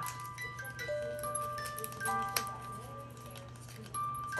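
Small wind-up music box playing a slow tune: single plucked metal notes ringing out one after another and fading.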